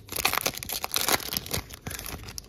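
Foil wrapper of a Pokémon TCG booster pack crinkling and tearing as it is torn open by hand. The crackles come in a dense, irregular run.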